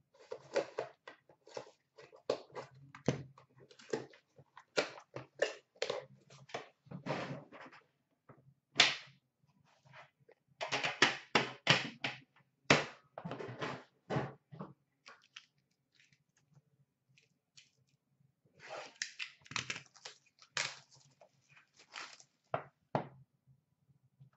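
Hands opening an Upper Deck The Cup metal box tin and handling the card pack inside: bursts of clicks, clacks and rustling, with a quiet pause of a few seconds after the middle.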